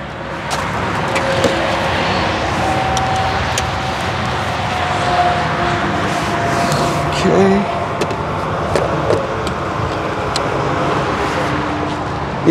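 Steady roar of road traffic, with scattered clicks and knocks as the Tesla Supercharger connector and a length of plastic tubing are handled.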